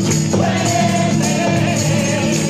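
Choir singing a Spanish Christmas song, accompanied by acoustic guitar, with tambourines jingling on the beat about twice a second.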